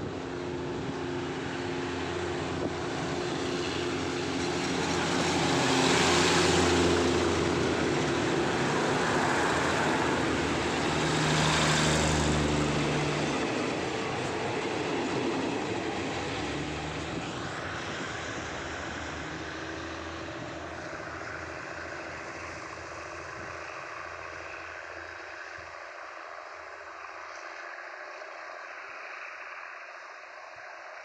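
SRT NKF-class diesel railcar train pulling out of a station, its underfloor diesel engines running and wheels rolling as the cars pass close by. It is loudest about 6 and 12 seconds in, then fades steadily as the train draws away.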